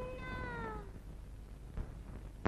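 A faint sung note from the song, held and then sliding down in pitch as it fades out about a second in. A few soft clicks follow near the end.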